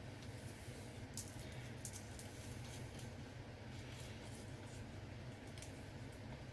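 Faint scattered clicks and ticks of small plastic ink bottles and their caps being handled, over a low steady hum.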